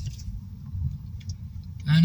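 Low, steady rumble of a car on the move heard from inside the cabin, with a few faint clicks. Near the end a person's voice cuts in briefly and loudly.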